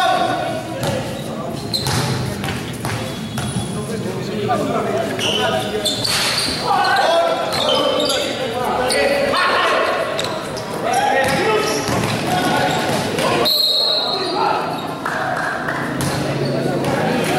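A basketball bouncing on an indoor gym court during play, with voices of players and onlookers calling out in the large hall.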